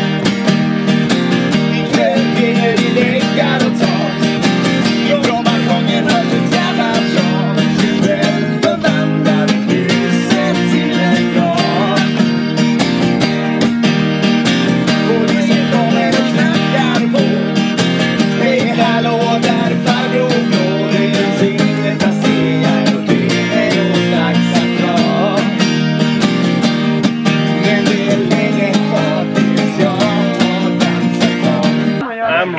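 Acoustic guitar strummed, with a man singing along.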